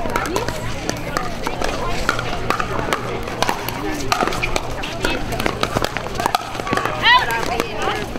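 Pickleball paddles striking plastic balls: an irregular string of sharp pops from this and neighbouring courts. Voices murmur around them, with a short loud voice near the end.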